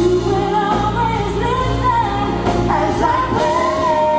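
Live pop singing with a band backing, several singers on microphones. About three and a half seconds in, two voices settle on long held notes in harmony.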